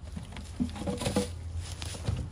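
A few light knocks and scuffs of wood against wood as a chunk of log is picked up off a pile of log pieces, the taps clustered about half a second to a second in, over a steady low background rumble.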